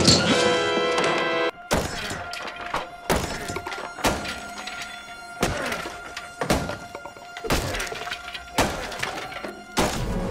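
Film soundtrack: a swell of orchestral music cuts off about a second and a half in. Then comes a run of heavy blows landing in a fight, roughly one a second, over a quieter music bed.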